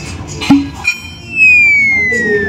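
Cartoon sound effects: a short springy boing about half a second in, then a loud whistle that starts just after the middle and falls slowly in pitch.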